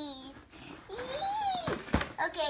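A young boy's wordless voice: a falling sound trailing off, then a rising-and-falling hum, followed by a short knock near the end.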